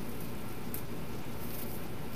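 Artificial fern and ribbon rustling as a wreath is handled, a few short rustles about a third of the way in and again near the end, over a steady background hum.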